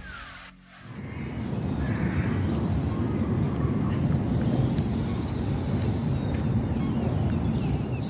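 Woodland ambience: a steady low rumble of wind on the microphone, with birds calling faintly above it.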